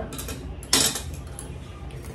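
Steel kitchenware clinking as it is handled: one sharp metallic clink about three-quarters of a second in, with a few lighter taps before it.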